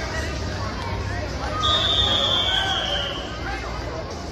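A referee's whistle blown once, about a second and a half in: one steady high note lasting under two seconds and dropping slightly in pitch, over crowd chatter.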